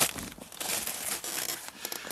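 Rustling and crinkling of a Mosko Moto riding-pant leg's fabric shell being hitched up over the top of an Alpinestars Tech 7 motocross boot, with a louder scrape right at the start.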